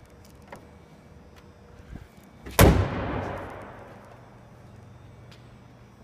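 A door of a 2009 Hyundai Tucson slammed shut once, about two and a half seconds in, with an echo that dies away over about a second and a half.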